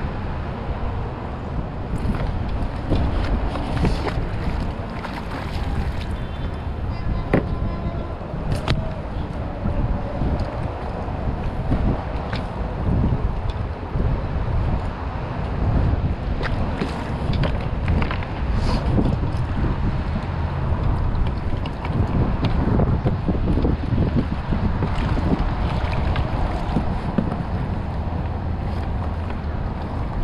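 Wind buffeting the microphone of a camera on a fishing kayak over water slapping against the hull, with occasional sharp clicks.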